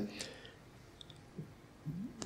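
A hesitation pause in a man's speech into a handheld microphone. It holds quiet room tone, a few faint clicks, and short low vocal sounds about halfway and near the end before he speaks again.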